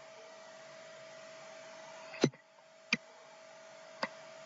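Two sharp computer mouse clicks, a little over two seconds in and again under a second later, over a steady hiss with a faint steady hum.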